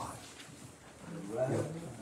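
A man's voice making one low, drawn-out untranscribed sound in the second half, with quiet room tone before it.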